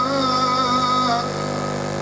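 A man's voice chanting a melodic recitation over a microphone and PA, holding one long wavering note that falls away a little past halfway, over a steady low hum.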